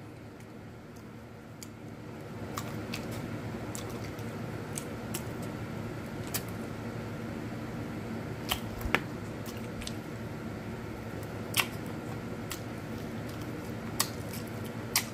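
Close-up eating sounds from chewing chicken wings and sucking sauce off fingers: scattered short clicks and smacks over a steady low room hum.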